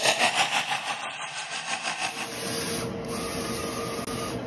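Small printing machine running over a sheet of stickers: a rapid rasping rhythm for the first two seconds, then a steadier mechanical whir with a faint whine.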